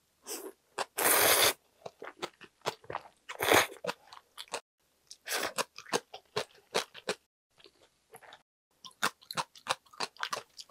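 Close-miked eating of ramyeon: noodles slurped into the mouth, with wet chewing clicks and smacks between. The loudest slurp comes about a second in, with two shorter ones a little before four seconds and around five and a half seconds.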